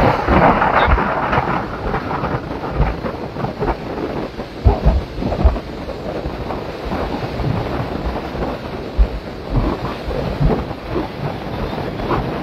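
Wind buffeting the microphone of a phone filming from a moving vehicle: a rumbling noise with irregular low thumps, over tyre and road noise.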